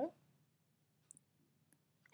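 Two faint computer mouse clicks, about a second in and again about half a second later, against near silence; a woman's voice trails off at the very start.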